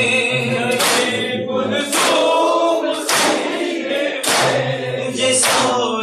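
A group of men sing a noha, a Shia lament, together. Loud, sharp hand strikes on the chest (matam) keep the beat about once a second, five strikes in all.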